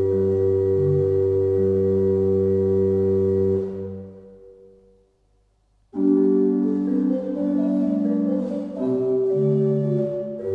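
Pipe organ dating from 1531 holding a chord that is released about three and a half seconds in and dies away into near silence. About two seconds later it starts again with quicker-moving notes: the end of a pavane and the start of its galliard.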